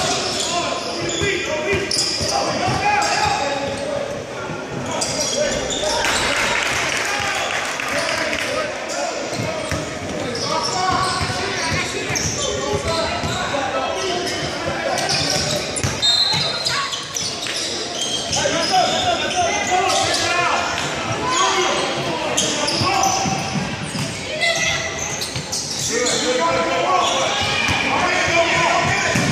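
Basketball bouncing on a hardwood gym floor during a youth game, with players' and spectators' voices carrying over it. Everything echoes in the large gym.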